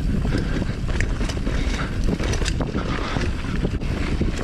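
Wind buffeting the camera microphone over the steady rumble of mountain bike tyres rolling on a dirt trail, with scattered clicks and rattles from the bike.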